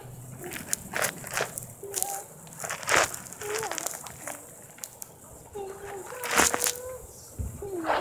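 A few sharp knocks over faint distant voices. The loudest knocks come about three seconds in and about six and a half seconds in.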